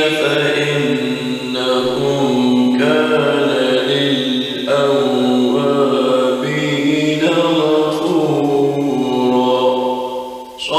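Quran recitation in a melodic chanted style: a reciter draws out long sustained notes in a series of flowing phrases, each a second or two long with brief breaks between them.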